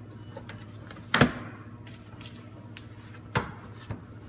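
Plastic cargo-area sill trim panel being pressed into place by hand, its clips popping into the body: a sharp snap about a second in and a second, smaller one a couple of seconds later.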